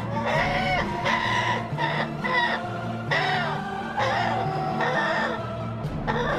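Background music with a steady bass line, with a rooster calling over it in repeated short bursts, about one a second.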